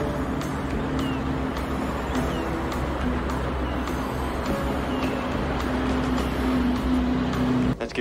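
Film soundtrack mix: music over car engines running, a dense steady sound with a low rumble that cuts off abruptly just before the end.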